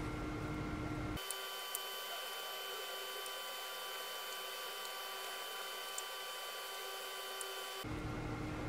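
Steady hiss and hum with several faint, constant whining tones from the induction hob under the pan. A few light clicks of the spoon against the pan come through as batter is dropped in.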